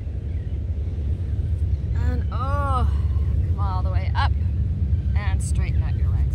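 Wind buffeting an outdoor microphone with a steady low rumble. A few short voice sounds come in from about two seconds in.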